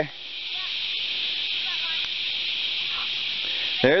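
A steady, high-pitched insect chorus, with a few faint clicks.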